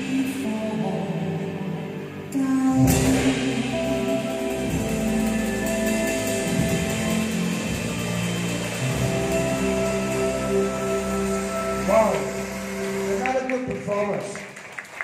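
A drum ensemble playing several drum kits together along with a recorded pop backing track that carries sustained melody notes, with a loud drum hit about three seconds in.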